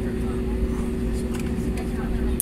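Airliner's jet engines running at taxi power, heard inside the passenger cabin: a steady low rumble with a constant droning hum.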